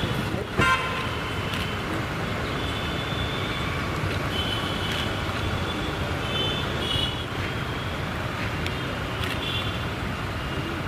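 Steady rumble of road traffic, with a short horn blast about half a second in and several brief high-pitched tones later on.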